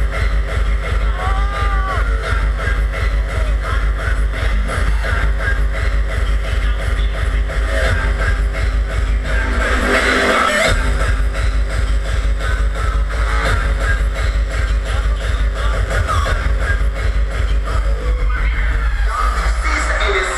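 Hardcore techno played live at high volume over a big arena sound system, heard from within the crowd: a fast, steady, heavy kick drum under electronic synth sounds. The bass drops out briefly about halfway through, then the beat comes back in.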